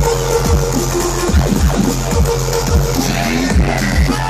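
Loud live electronic dance music in a dubstep style, played over a concert sound system and heard from within the crowd, with a heavy, sustained bass under a steady beat.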